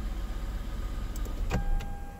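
The 2007 Lexus GS350's 3.5-litre V6 idles steadily, then is switched off about one and a half seconds in. A sharp click marks the switch-off, the engine hum dies away, and a steady high tone begins.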